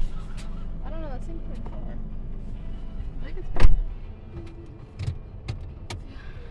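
Low steady rumble of a car running slowly, heard inside the cabin, with one loud sharp knock about three and a half seconds in and a few lighter clicks near the end.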